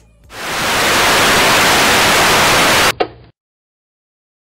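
Loud television-static hiss, a video-glitch effect. It swells in over about half a second, holds steady, and cuts off abruptly near three seconds in with a click and a brief, quieter hiss.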